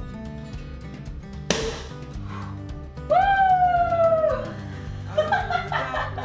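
A sparkling-wine cork pops once, sharply, about a second and a half in, followed by a long, loud whoop of a cheer and then laughter, over background music.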